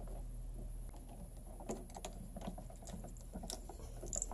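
Faint, scattered small clicks and scratches of stiff copper electrical wires being handled and an orange plastic twist-on wire nut being twisted onto them.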